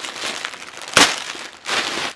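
Plastic mailer bag and the plastic-wrapped sweater inside crinkling as they are handled and pulled open, with one sharp, loud crackle about a second in.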